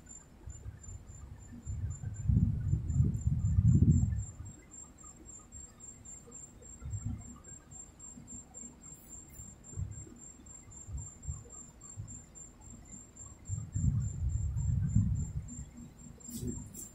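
Rubbing and scratching on a paper scratch-off lottery ticket lying on a table, in two bouts of a couple of seconds each, about two seconds in and again near the end, with a few light taps between them. A faint steady high whine runs underneath.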